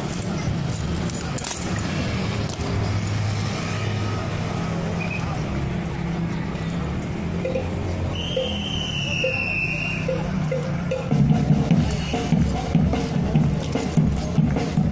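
Street procession background: a steady low hum with crowd voices, and sharp clacks of honor guard drill rifles being handled in the first couple of seconds. Midway a light ticking runs at about two a second, and near the end louder irregular banging sets in.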